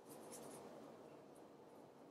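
Near silence: room tone, with a faint rustle in the first half second.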